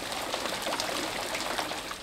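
Water spraying down and splattering onto fire-charred debris: a steady hiss of spray with small spatters.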